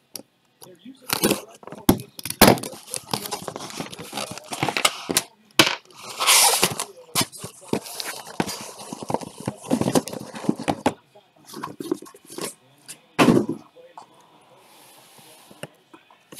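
A cardboard shipping case being opened and unpacked: packing tape torn, flaps pulled back, and sealed hobby boxes slid out and stacked. It is a run of scrapes, rips and knocks that thins out after about eleven seconds.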